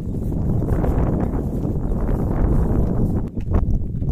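Wind rumbling and buffeting on the camera microphone, with hikers' footsteps. A few sharp knocks come about three and a half seconds in.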